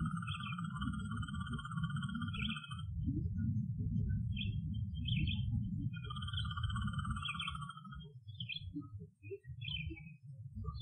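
Playback of an outdoor field recording: a constant low rumble with a high, finely pulsed trill, heard twice, once through the first three seconds and again about six seconds in. Short scattered chirps come in between. The rumble breaks up near the end.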